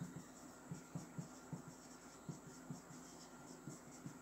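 Marker pen writing on a whiteboard: a series of faint, short strokes in irregular succession.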